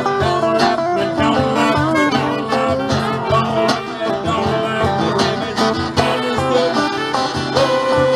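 Live acoustic blues band playing an instrumental passage: strummed acoustic guitar and electric guitar over a cajón beat. Near the end a saxophone starts a long held note.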